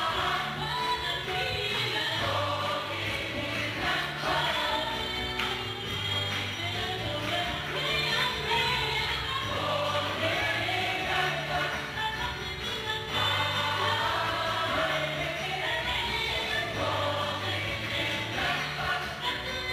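Gospel choir singing a song live, with female lead voices carrying the melody over held low notes from the accompaniment.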